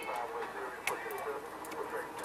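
Indistinct voices murmuring in the background, too faint to make out words, with a few sharp clicks, the loudest just before the middle.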